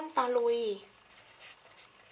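Orange felt-tip marker writing on paper: faint, soft scratching strokes as the pen forms letters, plainest in the second half once the words stop.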